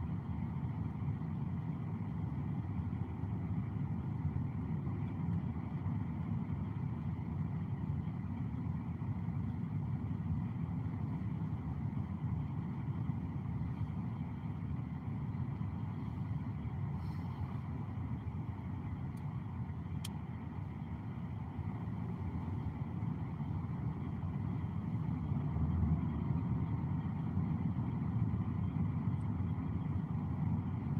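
Road and engine noise of a moving Toyota car heard from inside its cabin: a steady low rumble of tyres and engine while driving in traffic.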